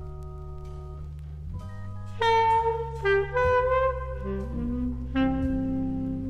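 Jazz ballad recording: sustained piano chords over bass, then a tenor saxophone comes in about two seconds in, playing a slow melody in long, loud notes.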